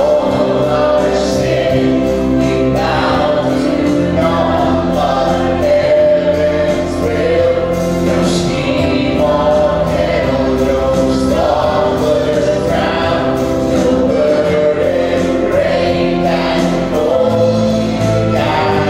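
Worship band leading a congregational song: a male lead and female vocalists sing together over acoustic guitar, bass guitar, piano and organ, at a steady level.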